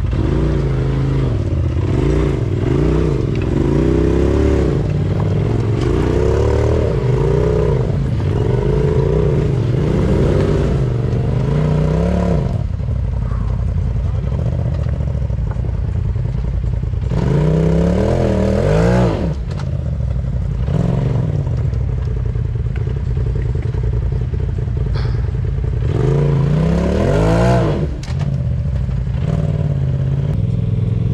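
Polaris RZR Turbo side-by-side's engine revving hard in repeated rising and falling bursts as it crawls up a rock ledge, with some clatter of tyres on rock. A long spell of revving fills the first twelve seconds or so, then two shorter bursts come about halfway and near the end, with lower running between them.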